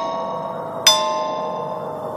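Outro of a dark horror instrumental beat: a bell-like tone with several overtones, struck about a second in, rings out and slowly fades over a low sustained pad, with no drums.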